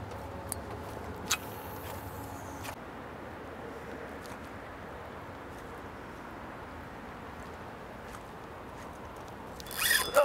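Steady outdoor background noise on open water, with a low hum that stops about three seconds in and a couple of faint clicks.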